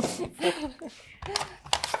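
Mostly a woman's voice talking and laughing, with a few sharp clicks near the end from kitchen utensils on a wooden cutting board.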